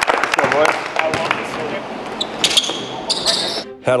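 Basketball game starting in a gym: hands clapping and players calling out, then a ball bouncing on the hardwood among court noise, all echoing in the hall.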